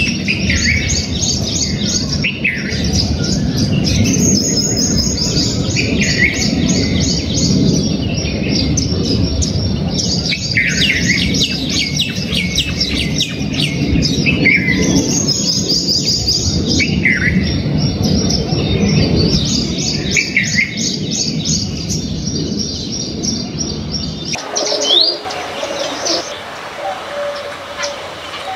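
Many small birds chirping and trilling in quick, overlapping phrases, over a steady low rumble that stops abruptly near the end.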